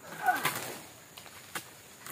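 Pole-mounted chisel (dodos) working at the base of an oil palm frond: a rustling, scraping stroke at the start that fades over about half a second, with a brief high call over it, then a light sharp click about a second and a half in.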